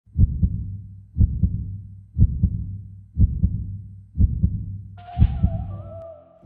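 Deep double thumps like a heartbeat, one lub-dub pair each second, six times over, used as the soundtrack's intro. About five seconds in, a sustained synth melody enters over them.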